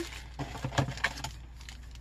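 A small cardboard box and plastic packaging being handled and opened: a few soft taps and rustles in the first second or so, then quieter.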